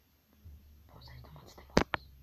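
Faint whispering over a low hum, then two sharp clicks close together near the end, much louder than the rest.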